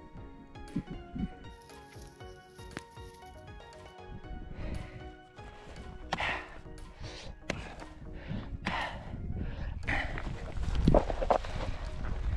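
Background music, joined in the second half by a hammer striking a hardened ant hill: dull thuds and crumbling, crunching earth, loudest about ten to eleven seconds in.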